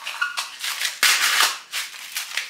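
Candy eyeballs rattling and clicking in a small clear plastic tub as it is picked up and handled, with crackles of the plastic; the loudest stretch comes about halfway through.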